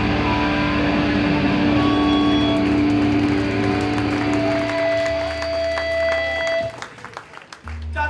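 Electric guitars and bass left ringing through the amplifiers after a hardcore song ends: several steady held tones over a low drone, cutting off about two-thirds of the way through. Scattered faint clicks follow.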